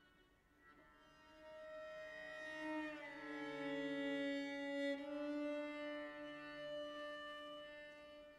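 Solo cello playing slow, held bowed notes, at times two notes at once. It swells from about a second in to its loudest around four to five seconds, then fades.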